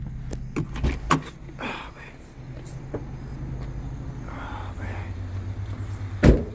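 A car's engine idling steadily inside the stopped car, with a few sharp clicks and knocks in the first second or so.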